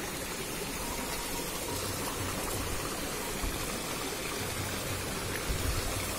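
Shallow water sloshing as a hand push net is swept through it along a grassy bank and feet wade in the mud, a steady wet swishing with a few soft low bumps near the end.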